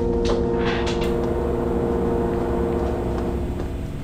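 A steady low droning hum of several held tones over a low rumble, with a couple of soft swells of noise in the first second; it cuts off abruptly at the end.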